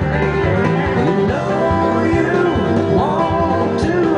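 Upbeat country music in an instrumental break between sung lines: a twangy lead line with sliding, bending notes over a steady bass and drum beat.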